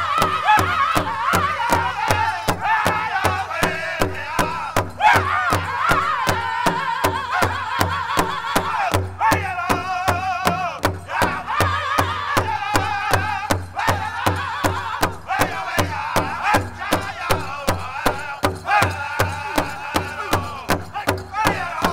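Pow wow drum song: a large drum struck in a steady, even beat, with men singing high-pitched over it.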